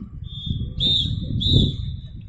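A whistle blown on one high, steady note that swells into two louder blasts, about a second in and again near the end, over a low background rumble.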